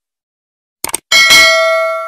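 Two quick mouse-click sound effects, then a notification bell ding that rings out with several clear tones and slowly fades.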